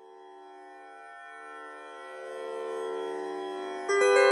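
Tanpura drone fading in from silence, its steady sustained notes growing gradually louder. Just before the end the level jumps as further bright, ringing notes come in.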